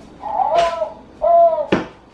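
Baby crying out twice in short wails as he wakes up; the second wail ends abruptly.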